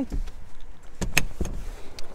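Handheld camera handling noise: a low rumble with a few sharp clicks and knocks about a second in, as the camera swings past the car's door frame.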